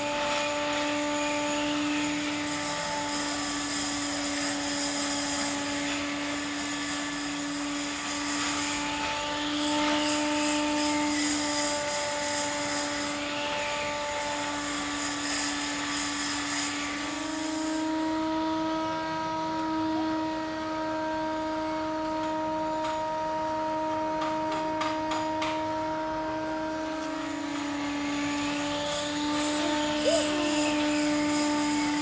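Flies and horseflies buzzing close by in a steady drone that shifts pitch a little after halfway and drops back near the end.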